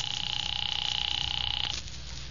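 Telephone ringing once, a steady fluttering ring about two seconds long that stops shortly before the end.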